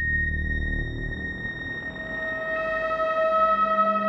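Behringer/ARP 2500 modular synthesizer playing a sustained, evolving electronic texture: a steady high tone holds throughout while a low rumble fades away in the first second or so. About halfway, a new lower tone with a ladder of overtones swells in and grows louder.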